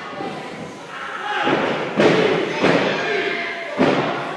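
Three heavy thuds from a wrestling ring as bodies and feet hit the canvas-covered boards: one about halfway through, another a moment later, and a third near the end. Crowd chatter continues underneath.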